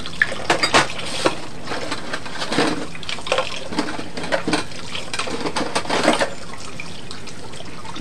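Kitchen tap running into a stainless steel sink while crockery is rinsed under it by hand, with frequent knocks and splashes as the dishes are handled. The knocking stops about six seconds in, leaving the water running steadily.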